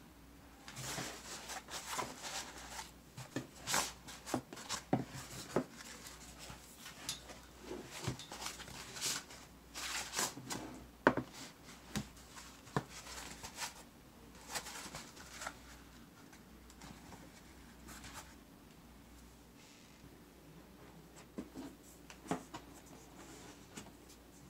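Foam packing inserts being pulled off and rubbed against a cardboard box, giving irregular scrapes, rustles and light knocks, thinning out over the last few seconds.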